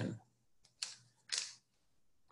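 Two brief rustles, about half a second apart, of a cord being handled and knotted by hand.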